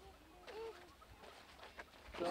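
Near silence, broken by one faint, short, pitched call about half a second in.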